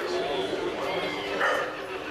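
Many people's voices talking at once, with a brief louder call about one and a half seconds in.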